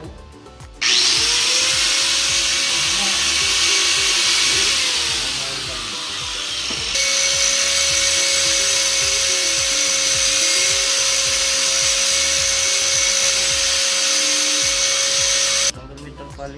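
Electric angle grinder starting up about a second in and running loud with a high whine, easing off briefly near the middle, then running steady until it cuts off just before the end.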